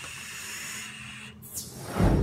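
Vaping on sub-ohm devices: a steady hiss of breath and vapor as a large cloud is blown out and air is drawn through the tanks. A brief swish comes near the end.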